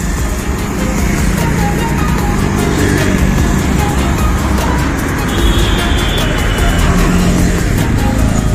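Busy road traffic driving past close by: cars, motor scooters and a bus, a steady loud rumble of engines and tyres that swells a little after about five seconds as the bus draws near. A few short high tones sound over the traffic.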